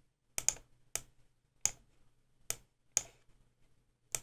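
Computer mouse button clicking about five times at uneven intervals, each a short, sharp click.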